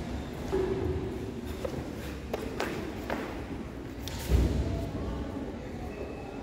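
A karate kata performed barefoot on foam mats: short sharp snaps and thuds of strikes and stamping feet, with the loudest thud about four seconds in, echoing in a large hall.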